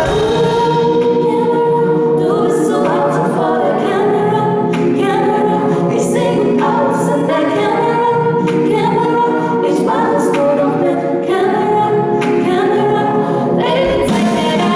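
Several women's voices singing in close harmony without instrumental backing. The bass and beat drop out at the start and come back right at the end, with a few sharp percussive clicks in between.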